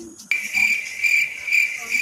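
Cricket chirping: a high, steady, pulsing trill that starts abruptly a moment in.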